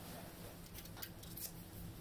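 Faint rustling and a few light clicks of paper towel strips being handled and adjusted in paper bowls.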